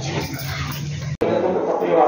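Priests' voices chanting Sanskrit mantras, broken off abruptly a little over a second in, after which voices carry on more strongly.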